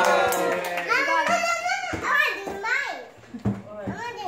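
Several voices, children's among them, talking and calling out over each other, loudest in the first second.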